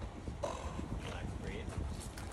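Wind buffeting the microphone with a ragged low rumble, and faint, indistinct voices briefly in the middle.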